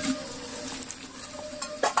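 Chopped vegetables tipped from a bowl into an aluminium pot of cooking khichuri, sizzling, with a few sharp knocks of the bowl and vegetables against the pot, the loudest just before the end.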